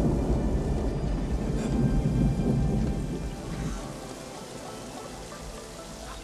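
Thunder rumbling over steady rain. The rumble fades away after about three seconds, leaving the rain.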